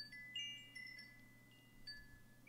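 Faint high chime tones tinkling: a scatter of bell-like notes at different pitches, each ringing on briefly and dying away.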